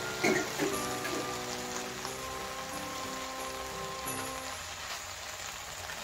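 Steady faint sizzle of chopped red amaranth leaves in a pan of hot ghee, with a few soft rustles near the start as the leaves are pressed down. Soft background music plays over it and stops about four and a half seconds in.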